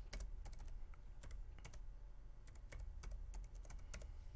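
Typing on a computer keyboard: a faint, irregular run of keystrokes over a low steady hum.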